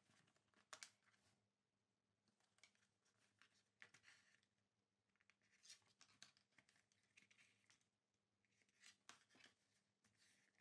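Faint, scattered rustling of paper pages being handled and thread being drawn through the punched spine holes while a zine is hand-sewn with a dash binding stitch.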